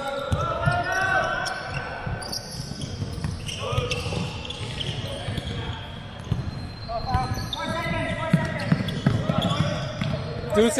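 A basketball bouncing repeatedly on a hardwood court in a large, echoing indoor hall, with players' voices calling out at times.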